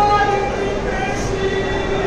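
A voice chanting an Urdu salam, a mourning recitation, in long held notes over the murmur of a crowd.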